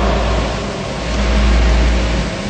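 A steady low hum with an even hiss behind it and no distinct event, like room ventilation or equipment noise.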